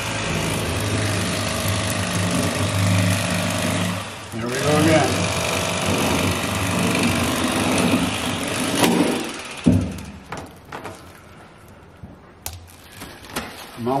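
Bubba Li-Ion cordless electric fillet knife running, its reciprocating blades cutting into a whole kokanee salmon behind the head and along the back. The steady motor buzz breaks off briefly about four seconds in, runs again, and stops just before ten seconds in.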